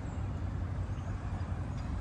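Quiet city street ambience: a steady low rumble of distant traffic.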